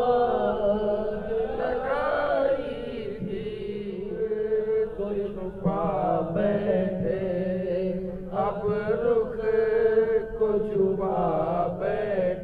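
A man chanting devotional zikr into a handheld microphone, in long, held, melismatic lines over a steady low drone.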